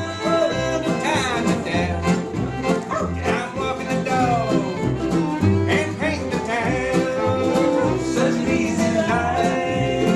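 Bluegrass band playing an upbeat song on fiddle, mandolin and upright bass, the bass keeping a steady beat under sliding fiddle lines, with a man singing.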